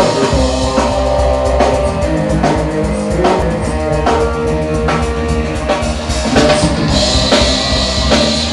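Live rock band playing: a drum kit keeping a steady beat under electric guitar.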